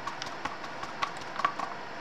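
Wooden craft stick stirring mica-tinted epoxy resin in a plastic cup, with a few light scattered clicks of the stick against the cup's sides.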